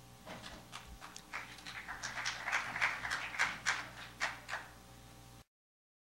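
Small audience applauding: scattered hand claps that quickly build to a fuller patter, then thin out and cut off suddenly near the end.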